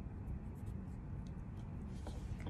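Faint scratching of a felt-tip marker on cardstock as a short mark is made against a metal ruler.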